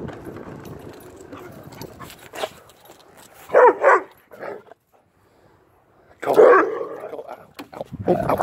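A dog barking in short loud bursts: a pair of barks near the middle with a shorter one just after, a brief silence, then another bark about three-quarters of the way through.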